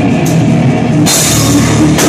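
Live punk rock band playing loud: electric guitar and drum kit, with a cymbal crash about a second in that rings to the end. The sound is harsh, as from a phone's microphone close to a loud stage.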